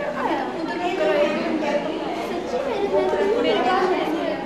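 Chatter of several people talking at once, overlapping voices in a large, reverberant room.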